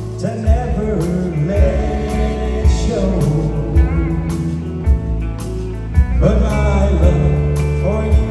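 Live country band playing a slow ballad, with electric bass, keyboard and a soft beat about once a second, while a male vocalist sings into a hand microphone.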